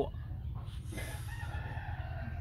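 A rooster crowing in the background: one drawn-out call starting about a second in, over a steady low rumble.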